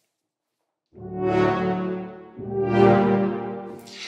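Sampled brass ensemble (Spitfire Audio Abbey Road ONE Grand Brass, four French horns with tuba) playing two short swell notes one after the other, starting about a second in. Each grows louder and brighter and blazes a little at the top of its dynamic before fading.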